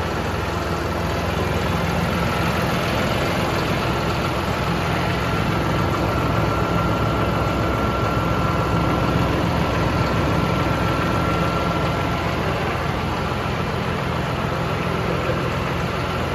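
John Deere 5075E tractor's PowerTech common-rail (CRDI) diesel engine idling steadily.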